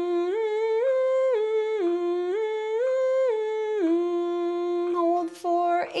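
A woman humming with closed lips in a sustained tone, stepping up a few scale notes and back down in a repeating pattern, each note held about half a second. About five seconds in, the hum breaks off into a few short, sharp breath sounds.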